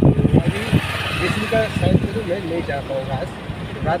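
Talking inside a moving car, over the steady low noise of the engine and road in the cabin.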